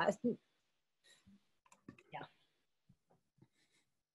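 A brief laugh that stops just after the start, then a mostly quiet stretch with a few faint scattered clicks and a single soft "yeah" about two seconds in.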